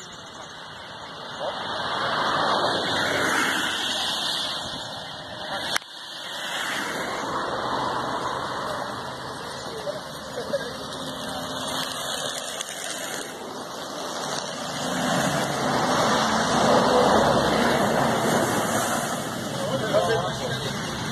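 Outdoor noise by a highway with indistinct voices and a road vehicle going by, the vehicle sound growing louder over the last several seconds. A single sharp click about six seconds in.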